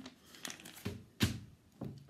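Crumpled paper bottle wrapper being handled and put aside: a few short rustles and knocks, the loudest just past the middle.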